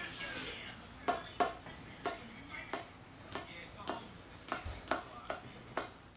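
A string of light, sharp taps, about ten at roughly two a second and unevenly spaced, from a toddler handling an inflatable rubber hopper ball.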